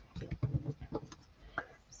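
Faint, scattered ticks and light rustles of cardstock and patterned paper being handled and pressed down onto a card front on a cutting mat.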